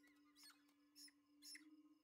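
Very faint squeaks of a mouse in a film soundtrack: a few short high chirps about half a second apart, over a faint steady hum.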